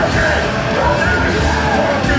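Hardcore punk band playing live and loud: distorted electric guitars, bass and drums under a shouted lead vocal.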